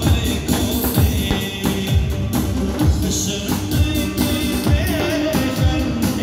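Live Kurdish party music through a PA: a man singing into a microphone over an electronic keyboard arrangement with a steady drum beat of about two beats a second.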